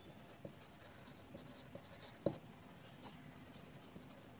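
Marker pen writing on a sheet: faint scratching strokes with one sharper tap a little past two seconds in.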